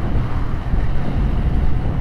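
Steady wind rumble on an action camera's microphone while riding a Yamaha New Vixion motorcycle in traffic, with the running engine and road noise mixed underneath.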